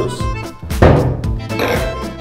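Background fiddle music, with one sharp thunk a little under a second in as the jigger and juice bottle are set down on the bar top.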